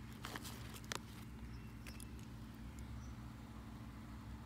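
Faint handling noise: a few soft clicks and rustles in the first two seconds as black tether cords are pulled out of a plastic tote, over a low steady background rumble.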